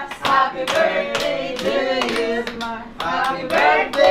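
A small group clapping in time, about two claps a second, while voices sing along in a birthday chant.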